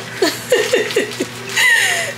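A woman laughing: a quick run of short laughs, each falling in pitch, then one longer laugh sliding down near the end.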